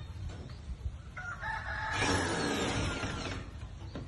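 A rooster crowing once. The crow starts about a second in, is loudest in the middle and lasts about two seconds.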